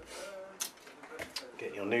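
A few light clicks and ticks from hands working at an electric guitar's strings during a string change, the sharpest about half a second in and just over a second in.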